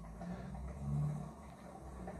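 Quiet room tone with a faint low hum that rises for about a second in the middle and then fades.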